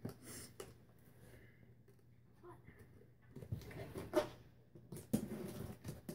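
Cardboard scooter box being worked open and shifted about on the floor: scraping and rustling with several sharp knocks, the loudest in the last two seconds.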